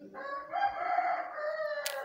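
One long, drawn-out animal call lasting nearly two seconds, with a sharp click near the end.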